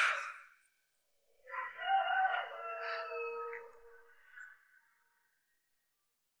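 A rooster crowing once, one long pitched call of about three seconds that starts about a second and a half in and trails off. A short breathy puff of noise just at the start.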